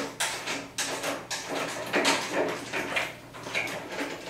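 Irregular metallic clanks and rattles of tools and bolts being handled as the bearing bolts are taken out to drop a go-kart's rear axle.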